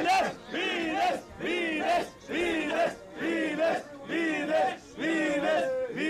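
A group of men chanting a slogan in unison, one loud shout about every second, each with the same rise and fall in pitch.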